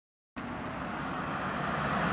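Road traffic noise from cars on a city street: an even hiss that grows slowly louder. It starts after a brief silence.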